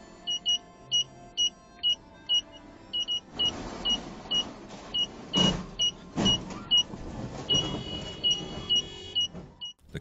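Short high electronic warning beeps, two to three a second, in the pattern of a car's parking sensor: they run together into one steady tone for about a second near the end, the sign of an obstacle very close. Car engine and tyre noise builds about three seconds in, with a thud about halfway through.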